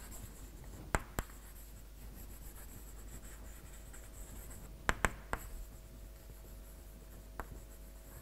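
Chalk writing on a blackboard: a few sharp taps and short scratchy strokes of the chalk, the clearest about a second in, around the middle, and near the end.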